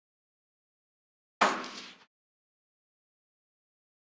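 A single rifle shot from a Sig Sauer 516 about a second and a half in, a sharp crack that dies away within about half a second. The bolt fails to lock back after the shot, the malfunction being shown.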